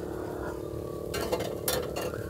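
Fatwood fire burning in a small steel fire manger, with a few short sharp clicks in the second half over a steady low hum.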